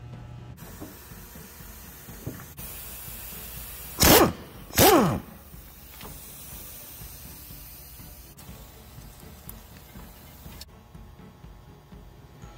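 Pneumatic impact wrench fired in two short bursts about a second apart, each falling in pitch as it spins down, running bolts loose from an AC compressor bracket.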